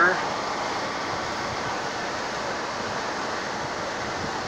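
Steady rushing roar of the Truckee River's whitewater rapids, the river running high and fast with snowmelt.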